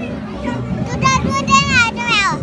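A child's high-pitched voice cries out over the hubbub of a walking crowd: one long cry about a second in, its pitch wavering, then a second cry at the very end that drops in pitch.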